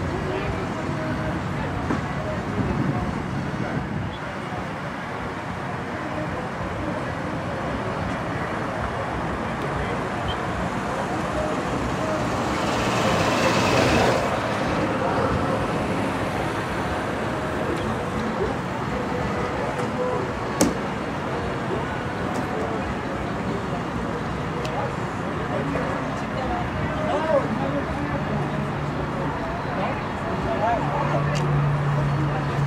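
Outdoor crowd and traffic ambience: distant voices over a steady rumble of noise. About halfway through, a vehicle passes, rising and fading. There are a couple of sharp clicks later on.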